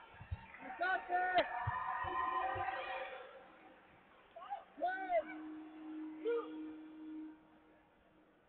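People shouting short, excited calls during the bout, one held long near the end, with a single sharp smack about a second and a half in.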